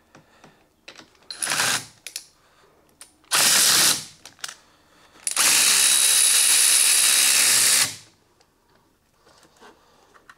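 A hand-held power tool whirring in three runs: a short one about a second and a half in, another around three and a half seconds, and a longer one of about two and a half seconds from the middle. It is undoing the clamp nut on the car battery's terminal to disconnect the battery.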